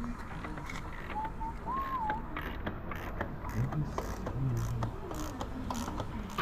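Light, scattered clicks and knocks of hand tools being handled in a workshop, with a faint wavering high tone about a second in.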